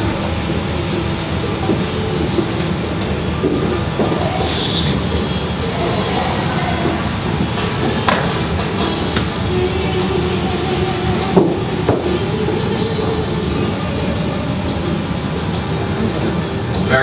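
A film soundtrack played through room speakers: music over a steady rumbling background, with no clear speech.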